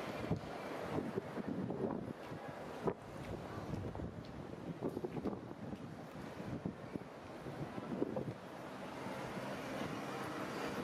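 Outdoor street ambience with wind buffeting the microphone over a steady hum of traffic, broken by scattered short knocks.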